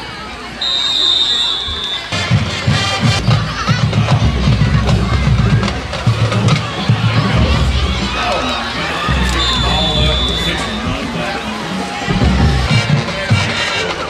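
Football game crowd noise with music and a low, pounding drum beat from about two seconds in, plus cheering and voices. A short, high, steady whistle sounds about a second in and again about ten seconds in.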